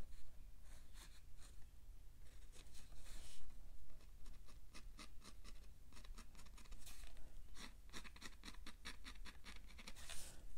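Black Sharpie fine-tip pen scratching across textured watercolor paper in short, quick, sketchy strokes, thickening into a rapid flurry of strokes in the second half.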